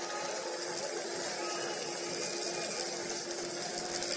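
Steady stadium ambience from the broadcast's pitch-side microphones: an even background hiss with a faint steady hum underneath.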